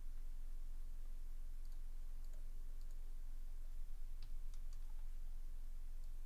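A few light, scattered clicks of a computer mouse and keyboard, over a steady low hum.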